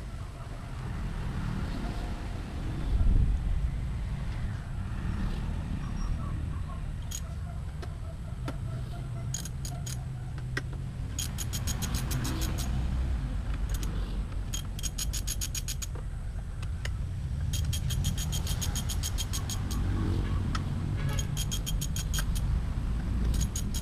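Hand ratchet clicking in rapid bursts of one to two seconds, about six of them from a third of the way in, as the bolts holding the Honda CBR150's fairing are backed out. A steady low rumble runs underneath.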